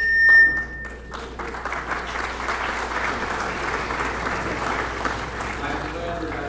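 Audience applauding for several seconds. A brief high whistle sounds at the very start as the clapping begins.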